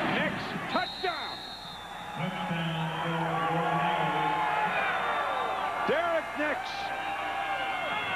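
Football stadium crowd cheering and players whooping right after a one-yard touchdown run, with a high whistle held for about a second near the start.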